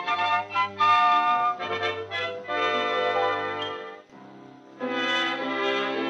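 Orchestral music with brass to the fore: a run of short notes, a brief drop-out about four seconds in, then a full held chord.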